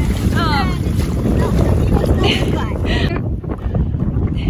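Wind buffeting the phone's microphone, a steady low rumble throughout. About half a second in comes a short series of high, falling voice-like sounds, with two brief high squeaks later on.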